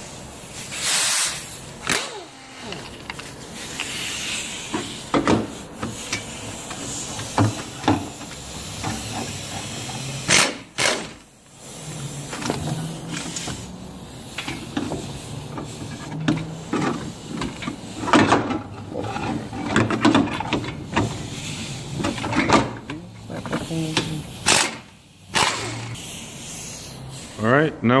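Air impact wrench in short bursts of hissing and rattling, loosening the bolts of a front brake caliper bracket.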